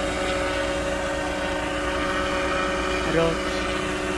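Unmanned crop-spraying helicopter flying over the fields, its engine and rotor giving a steady drone with a few held tones as it sprays pesticide.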